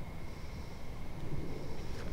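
Low, even outdoor background rumble with no distinct events, and a faint steady high tone running through it.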